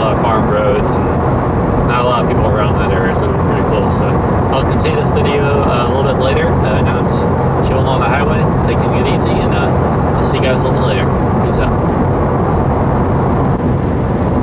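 Steady in-cabin drone of a 2015 Subaru WRX's turbocharged flat-four engine and tyres while cruising at road speed. Indistinct voice sounds run over it.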